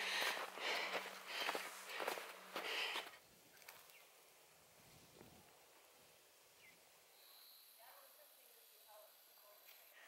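A hiker's hard, rapid breathing and footsteps on snow while climbing quickly uphill, a run of breaths about every second. It cuts off about three seconds in, leaving near silence.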